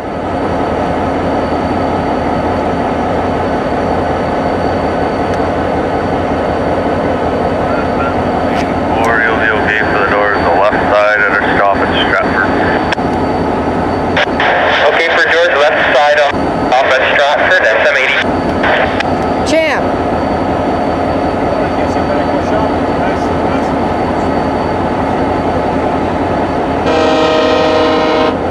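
Diesel locomotive idling loudly and steadily close by, with dogs barking on and off in the middle of the stretch. Near the end, a train horn sounds briefly.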